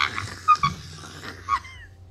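A person's voice making a few short squeaky gasps and wheezes, about half a second in and again about a second and a half in, tailing off after a scream.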